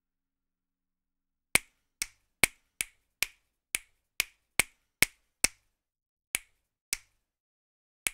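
A drum sample from the EZdrummer 2 plugin, triggered about a dozen times at an uneven, hand-played pace. Each hit is a short sharp crack that dies away at once, with dead silence between hits.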